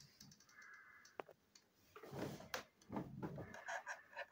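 Plastic toy-train parts being handled and fitted by hand: light clicks and scrapes, with two louder rustling, scraping bursts around the middle.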